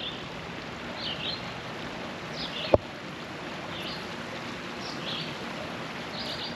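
Shallow stream water running over rocks, a steady rushing hiss, with short high bird chirps about once a second and a single sharp click a little before halfway.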